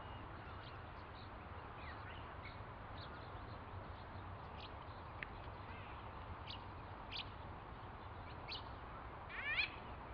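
White-fronted bee-eater calling: short, thin calls scattered through, with a louder call that rises and falls in pitch near the end, over a steady low background noise.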